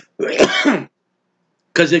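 A man clearing his throat once: a short, rough burst lasting under a second.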